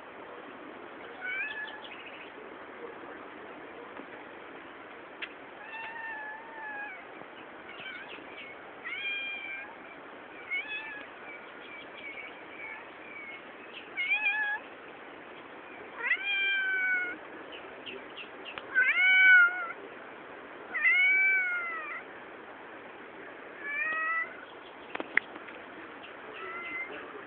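An animal calling repeatedly: about ten short cries, each rising and falling in pitch, coming every few seconds and loudest about two-thirds of the way through, over a steady background hiss.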